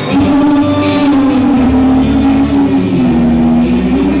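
A boy singing into a microphone over backing music, drawing out long held notes.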